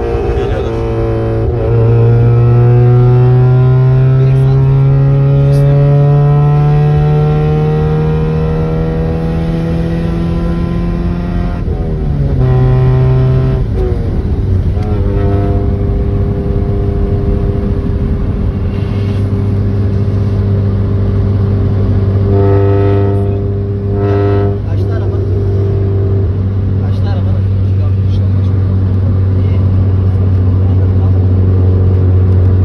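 Car engine heard from inside the cabin, rising steadily in pitch under acceleration for about twelve seconds. It drops in pitch as the car shifts up, then runs at a steady cruising drone.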